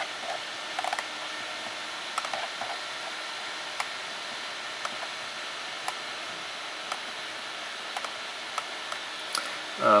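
Steady hiss of room noise with faint light clicks about once a second.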